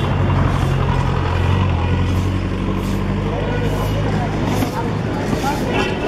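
A motor vehicle's engine running with a steady low hum that fades out about four and a half seconds in, over the chatter of a street crowd.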